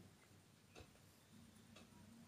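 Near silence: faint room tone, with one faint click a little under a second in.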